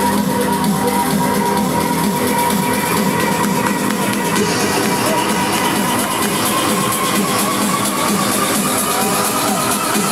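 Electronic dance music from a DJ set, played loud over a festival main-stage sound system and heard from within the crowd. A high synth tone holds steady, then slowly rises in pitch from about seven seconds in.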